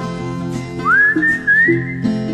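Instrumental break of a folk song: a whistled melody that slides up about a second in and holds a high note, over plucked acoustic guitar.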